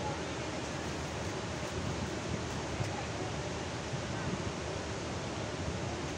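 Water rushing out through the open spillway gates of a large concrete dam and pouring into the spray-filled basin below. The sound is a steady, even rushing with no breaks.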